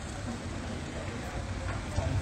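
Steady outdoor ambience of an open town square: an even hiss over a low rumble, with no distinct events.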